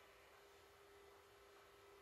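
Near silence, with only a faint steady tone.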